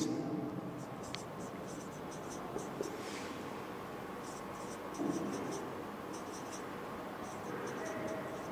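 Marker pen writing on a whiteboard: quick runs of short strokes as each word is written, with pauses between words.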